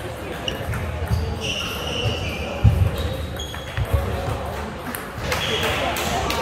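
A table tennis ball and players moving between points: a few dull thuds in the first part, then from about five seconds a series of sharp clicks of the plastic ball, with voices murmuring in the background.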